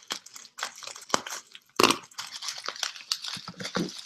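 Clear plastic wrapping crinkling and crackling irregularly as a wrapped book is unwrapped by hand, with one louder crackle about two seconds in.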